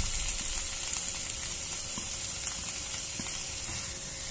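Freshly added chopped onion sizzling steadily in hot butter in a nonstick frying pan while being stirred with a silicone spatula, the sizzle easing slightly as it goes.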